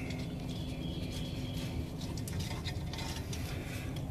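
Faint rustling and light clicks from hands handling wiring close to the microphone, over a steady low rumble.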